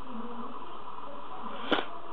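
Steady background hiss with faint, indistinct voices in the room, and one sharp click near the end.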